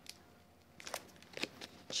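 Faint paper crackles and small ticks starting about a second in, as card is handled and the paper backing is peeled off adhesive mounting foam.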